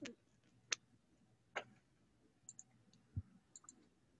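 Faint computer mouse clicks, spaced about a second apart, some heard as a quick double click. A soft low thump comes about three seconds in.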